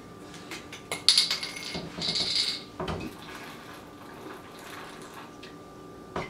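Pills rattling inside a small plastic prescription bottle as it is shaken, in two bursts about one and two seconds in, followed by a soft knock.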